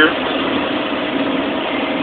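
Big truck's engine running steadily, heard from inside the cab, with an even rumble and road noise and a faint low hum.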